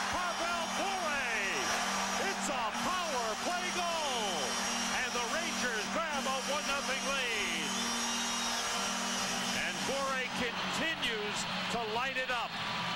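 Arena goal horn blaring steadily over a cheering, whooping crowd, the horn signalling a home-team goal; the horn cuts off about nine seconds in while the crowd keeps cheering.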